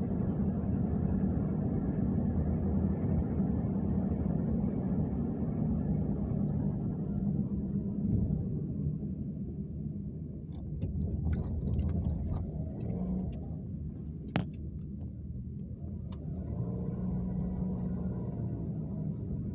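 Steady low road and engine rumble inside a moving car's cabin, easing a little about halfway through. A few light clicks come in the second half, the sharpest about three quarters of the way in.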